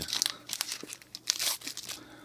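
Foil wrapper of a trading-card pack crinkling in irregular bursts as it is opened and the cards are pulled out.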